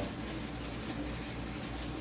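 Steady low hum with a faint hiss and no distinct events.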